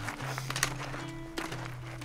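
Background music with held low notes. A few sharp clicks of trekking poles and boots on rocky ground come through it.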